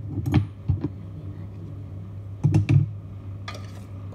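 Kitchenware being handled: a steel pot of mashed potato is moved over a glass baking dish. There are a couple of light clicks within the first second and a short cluster of knocks about two and a half seconds in, over a steady low hum.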